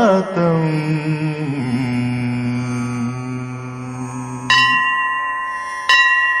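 Devotional music: a sung phrase ends in a long held low note, then a bell-like chime is struck twice, about four and a half seconds in and again near the end, each strike ringing on with a clear steady tone.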